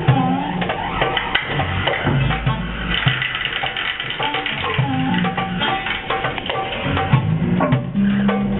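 Live improvised experimental electronic music: a dense run of clicks and knocks over low pitched tones that bend and glide.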